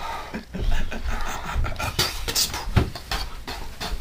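Handling noise from a handheld camera being swung about: irregular rubbing and scattered knocks with a low rumble.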